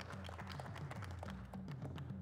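Quiet background music with a stepping bass line.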